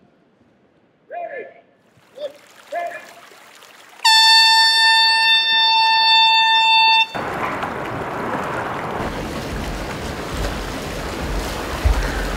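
A single held air-horn blast lasting about three seconds that cuts off sharply. It is followed by steady splashing from people wading fast through waist-deep pool water.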